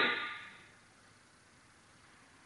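A man's spoken count, "forty", dying away in the opening half-second, then quiet room tone.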